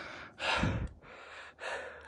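A person breathing hard: two loud breaths, one about half a second in and another about a second later, the first with a low rumble on the microphone.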